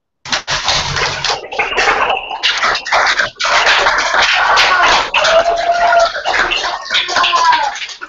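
Classroom audiences applauding and cheering, with a few voices whooping, heard over a video-call connection. The clapping starts suddenly and runs dense and loud.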